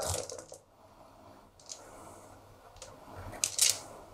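A handful of six-sided dice shaken in cupped hands and rolled onto a gaming mat: mostly faint, with a short clatter of the dice about three and a half seconds in.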